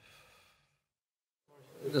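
A pause in a man's conversation: a faint fading tail, then about a second of dead silence, then an audible breath or sigh rising into the first word of speech near the end.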